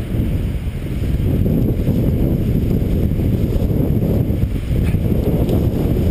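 Wind buffeting the camera's microphone: a loud, steady, low rumble that grows a little stronger about a second in.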